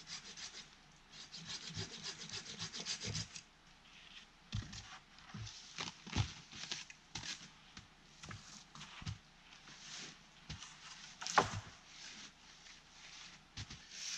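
A hand saw cutting through a dead branch in a quick run of strokes for a couple of seconds. Then scattered knocks and scrapes of dead wood being handled, with one louder sharp crack near the end.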